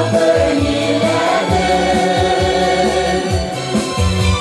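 Mixed choir of men and women singing a Tatar folk song in unison and harmony, over amplified accompaniment with a bass line of repeated low notes.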